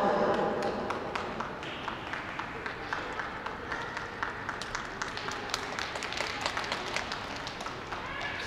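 Scattered applause from a small audience: many separate hand claps, thinning slightly toward the end, with the tail of a public-address announcement fading at the very start.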